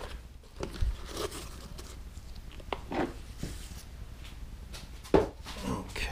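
Handling noises from worm bins: damp paper bedding rustled as it is pressed down to cover a plastic bucket, a few soft knocks, then a sharp knock about five seconds in as a plastic tub is set down.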